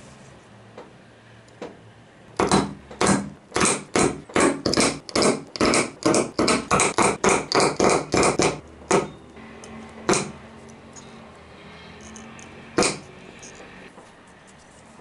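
Rotary leather hole-punch pliers punching a row of holes through leather, a quick run of sharp crunching snaps about three a second, then a few single punches with pauses between them.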